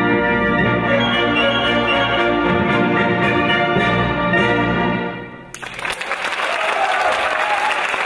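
Concert wind band of brass and woodwinds playing the closing bars of a piece, ending on a long held chord that cuts off about five and a half seconds in, followed by audience applause.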